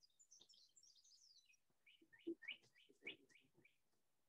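Faint outdoor birdsong: a quick high twittering, then a run of about eight short notes, each falling in pitch. A few soft low knocks sound under the loudest of these notes.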